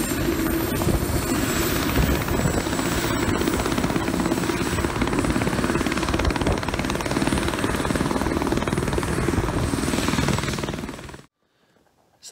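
Airbus AS350 B2 AStar helicopter with its Turbomeca Arriel turboshaft engine running up from idle to full rotor RPM, ready to fly: a steady high turbine whine over dense engine and rotor noise. It fades out shortly before the end.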